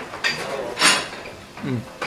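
A man slurping sukiyaki beef from a bowl held to his mouth, with a short noisy suck about a second in, then a short falling "mm!" of approval near the end.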